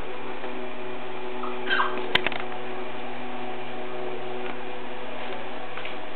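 Steady electrical hum with several fixed tones, like a running fan or appliance. A puppy gives one short squeak about one and a half seconds in, followed by a sharp click.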